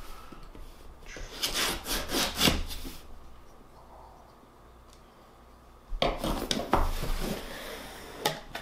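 A small knife slitting the packing tape on a cardboard shipping box in a run of quick scraping strokes. After a pause of about three seconds there is more scraping and rustling of cardboard as the flaps are pulled open.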